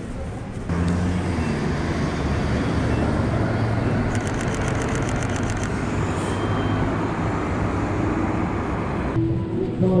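City street traffic with a bus engine running close by at an intersection. A rapid, even burst of camera shutter clicks, about eight a second, comes near the middle.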